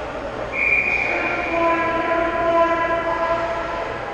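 A high, steady whistle blast starts about half a second in. A horn sounding one low, steady note follows, held for about two seconds and overlapping the end of the whistle.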